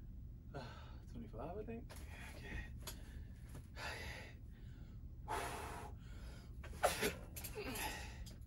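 A man's forceful exhales and gasps while bench pressing a barbell, about six sharp breaths a second or so apart, with short grunts near the start and near the end: the effortful breathing of hard reps.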